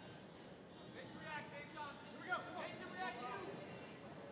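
A raised voice calling out in a large gym, over the steady murmur of the hall.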